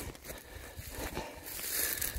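Footsteps through rough moorland grass and heather, with uneven rustling and soft thuds as the walker moves, growing louder in the second half.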